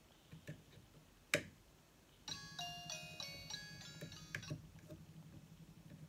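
A button click about a second in, then the light-up gift-box snow globe's electronic music chip plays a few bell-like tune notes for about two seconds before stopping, as the globe is switched to its quiet mode.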